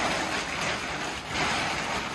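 Crinkly tent fabric, the grey rainfly and tent body, rustling and flapping loudly as it is gathered up and shaken out, in several swelling surges.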